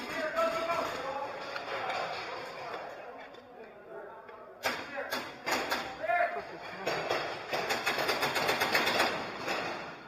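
Paintball markers firing in a large indoor arena: scattered sharp shots, then a fast, dense run of shots over the last few seconds, with voices shouting in the background.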